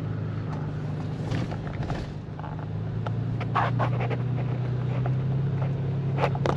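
Toyota FJ Cruiser's V6 engine and road noise heard from inside the cabin while driving: a steady low drone that rises slightly in pitch about halfway through, with a few light knocks and rattles.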